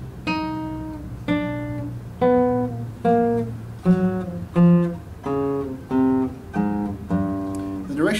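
Nylon-string classical guitar played as a slow left-hand finger exercise: about ten single plucked notes, a little under a second apart, each left to ring as the pitch steps up and down.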